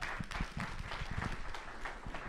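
Audience applauding: a dense spread of hand claps.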